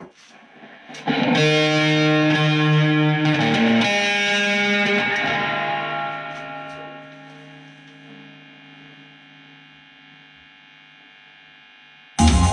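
Electric guitar played through distortion. After a few faint plucks, a loud distorted chord is struck about a second in and shifts to another chord around three to four seconds in. It is then left to ring, fading slowly away.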